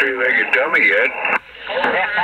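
CB radio receiving voices on 27.385 MHz lower sideband: distant stations coming in on skip, thin and hard to make out, with a brief dropout about a second and a half in.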